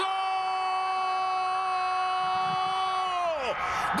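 A Spanish-language football commentator's long goal shout, a single held high note of "gol" lasting about three and a half seconds, whose pitch drops sharply at the end before a breath.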